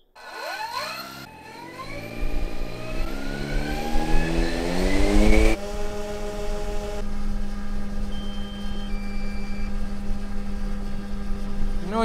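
Pair of coaxial brushless electric motors on an aero-cart spinning up their 30-inch propellers: a loud whine and drone rising steadily in pitch for about five seconds. It then changes abruptly to a steady drone at one constant pitch.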